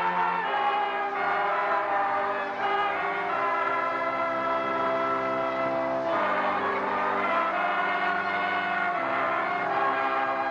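Keyboard playing long, held organ-tone chords, moving to a new chord about six seconds in and again about nine seconds in.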